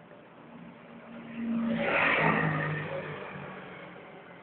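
A road vehicle passing by: it swells up about a second in, is loudest near the middle and fades away, with its engine note dropping in pitch as it goes past.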